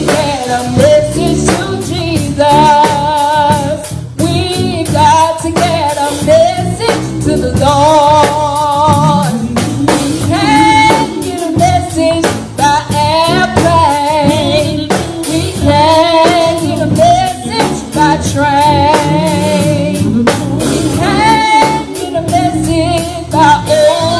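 A woman singing a gospel song into a handheld microphone, her voice wavering with vibrato, over a live accompaniment with drums.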